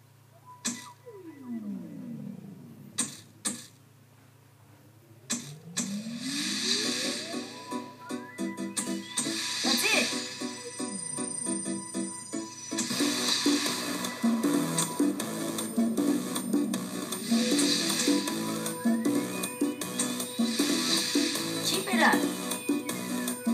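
A Zumba dance-fitness music track starting up: a few sharp clicks and falling pitch sweeps in a quiet intro, a rising sweep, then a full dance beat from about six seconds in.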